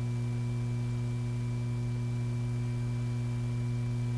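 Steady low electrical hum with a few faint higher tones held over it, the background hum of an old film soundtrack; no other sound.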